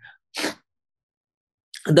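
A single short, breathy burst of air from a person, about half a second in, without any voiced pitch.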